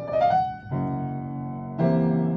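Piano playing a passage of chords between sung verses of a song, with a new chord struck about two-thirds of a second in and another just before the end.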